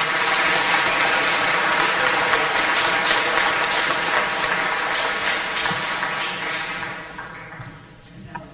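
Audience applauding, a dense steady clapping that fades away in the last second or so.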